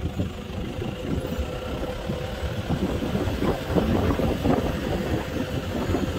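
A car's engine and road noise heard from inside the cabin, a steady hum.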